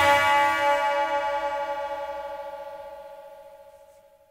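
The last chord of a rock song ringing out with a slight pulsing wobble, fading steadily to silence near the end.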